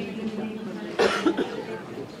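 A person coughs about a second in, two quick coughs, over a steady murmur of voices.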